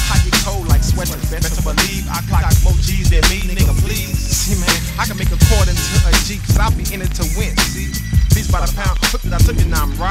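Hip hop mixtape track: a rapper delivering verses over a bass-heavy drum beat.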